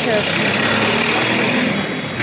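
Loud, steady background din of a busy street: a noisy rush of traffic and crowd, without clear single events.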